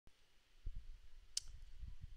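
A computer mouse button clicking once, sharply, a little after halfway through, over faint low bumps.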